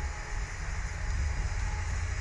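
Steady low rumbling noise from wind buffeting the microphone of a camera mounted on a Slingshot ride's capsule as it swings.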